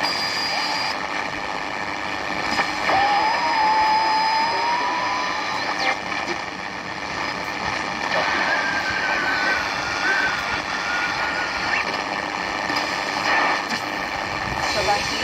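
Philips two-band transistor radio being tuned between stations: a steady rush of static with thin whistles that slide in pitch as the dial moves, one rising gently and another wavering downward later on.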